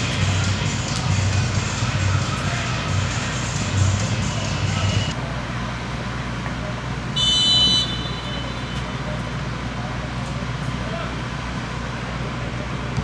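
Music that cuts off about five seconds in, then open stadium ambience with a low steady hum. About seven seconds in comes one short, high referee's whistle blast signalling the kick-off.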